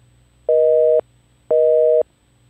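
North American telephone busy signal: a steady two-tone beep, half a second on and half a second off, sounding twice.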